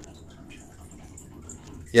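Quiet room tone with a few faint, indistinct ticks, then a man says "yeah" right at the end.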